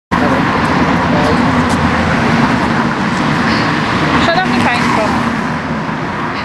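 Steady street traffic noise, loud on the open-air microphones, with a brief voice in the background shortly before the end.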